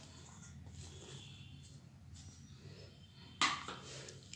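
Chopped spinach sliding from a plate into a steel bowl as a faint soft rustle, then a single sharp knock about three and a half seconds in that rings briefly.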